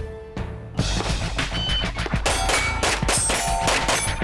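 A fast string of handgun shots, about a second in, with steel target plates ringing as they are hit.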